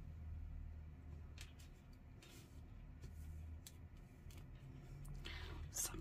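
Faint handling sounds of cloth and paper being pressed and smoothed by hand on a cutting mat: a few light ticks and rustles over a steady low hum.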